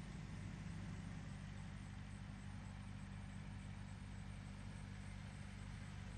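A steady low hum with a faint hiss above it, unchanging throughout.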